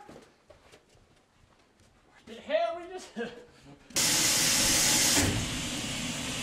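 A shower's water spray comes in suddenly about four seconds in and runs as a loud, steady hiss, easing slightly after about a second.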